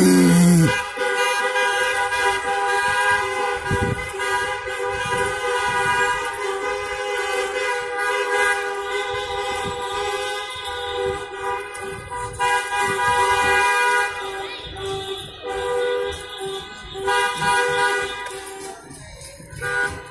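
Many car horns honking together in a passing car procession, long held blasts overlapping into a steady sounding chord that eases off a little near the end.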